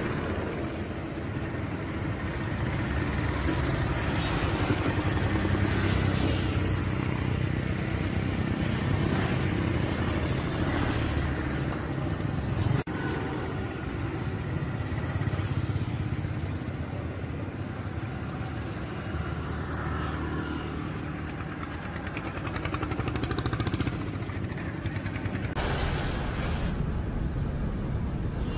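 Street traffic: motor vehicles and motorcycles running by in a steady mix of engine noise, with a sharp click about halfway through.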